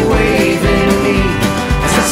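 A country band plays an instrumental passage of the song, with no singing. A drum kit keeps a steady beat under fiddle, pedal steel, guitars and bass.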